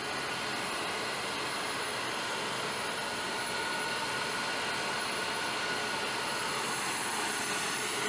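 Steady jet-engine noise, an even rushing sound with a thin high whine over it.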